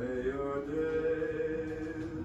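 Music: one singing voice holding a long note.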